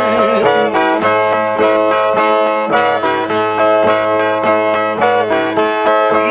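Ten-string viola nordestina (steel-strung folk guitar) playing an instrumental interlude between sung stanzas: a brisk run of plucked notes over strings left ringing. A held sung note dies away in the first half-second.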